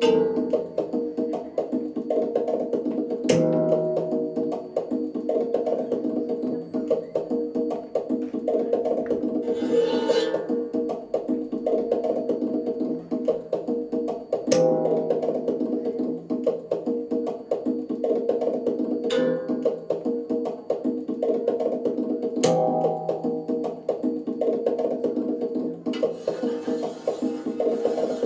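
A steady, layered drone of sustained pitched tones, with four sharp knocks spread through it from a stick striking the blades of a ceiling fan. Brief hissing swells come about ten seconds in and again near the end.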